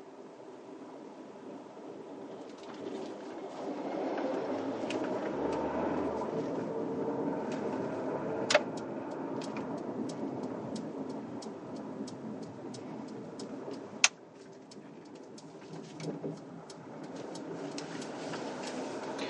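Road and engine noise inside the cabin of a car pulling away and driving slowly: a steady rumble that grows louder a few seconds in and eases off later. A run of regular light ticks comes in the second half, with a couple of sharper clicks.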